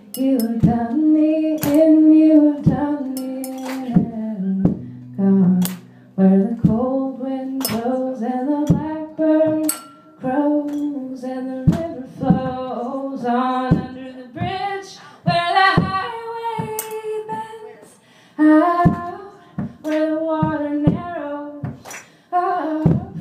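A woman singing a slow melody over a strummed acoustic guitar, the strums falling about once a second.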